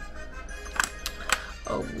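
A few sharp clicks of plastic Lego bricks being handled, close together about a second in, over steady background music.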